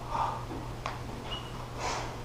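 A man breathing out hard through the nose, a soft breath near the start and a sharper snort-like rush near the end, as he works a wooden staff. One sharp tap comes a little under a second in, over a steady low hum.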